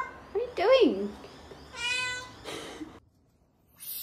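A domestic cat meowing: a long meow that rises and falls in pitch about half a second in, then shorter calls around two seconds in.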